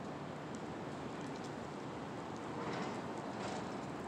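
Steady hiss of city street background noise, with a few faint ticks and a slight swell about three seconds in.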